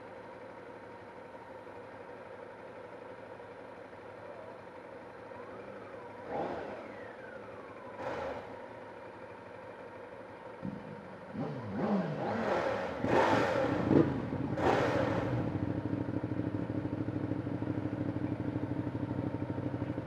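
Motorcycle engines idling steadily, then revved in a few short rising and falling blips between about eleven and fifteen seconds in, after which the engine note holds steadier and louder.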